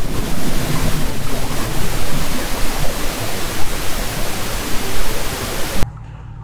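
A loud, steady rushing hiss like static, spread evenly from low to high pitch, that cuts off suddenly near the end.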